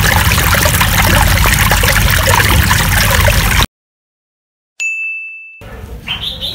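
Seawater washing and splashing over rocks close to the microphone, loud and continuous, cut off abruptly about three and a half seconds in. After a moment of dead silence, a single bright ding rings out and fades within a second.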